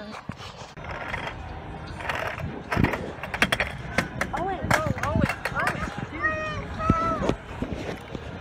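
Sharp clattering knocks on wooden deck boards as a child plays with a plastic toy car, mostly in the middle. In the second half comes a young child's high voice.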